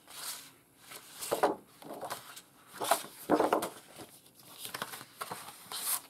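Sheets of cardstock and specialty paper being handled and leafed through, rustling and sliding against one another in several separate swishes, the loudest near the middle.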